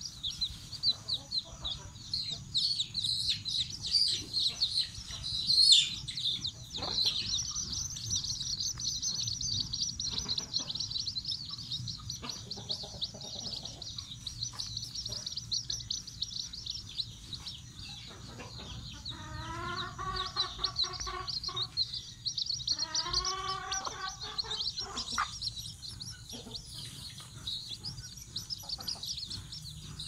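A brood of chicks peeping continuously in high, rapid cheeps, busiest in the first half. A hen clucks in two short runs of calls about two-thirds of the way through.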